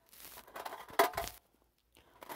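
Handling noise from small craft pieces being moved by hand: a rustle, then one sharp click about a second in.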